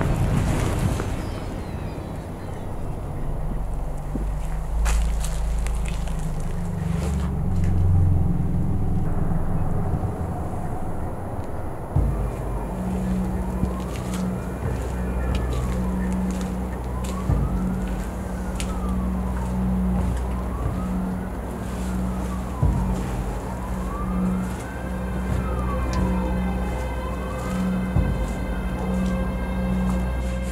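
A siren wailing, its pitch rising and falling slowly about every three and a half seconds, starting about twelve seconds in and holding a steady tone near the end, over a heavy low drone.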